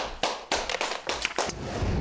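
A few people applauding, scattered claps about three to five a second. A low hum comes in near the end.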